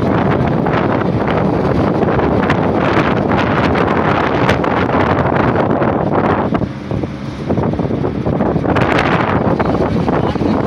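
Wind rushing over the microphone of a phone held in a moving vehicle, mixed with road and engine noise as a loud, steady rush. The rush eases briefly about seven seconds in.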